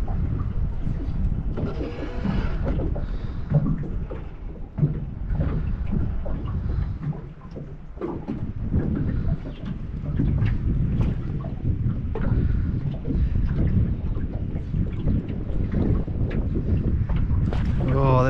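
Wind buffeting the microphone in uneven gusts, with water lapping at a small aluminium boat's hull.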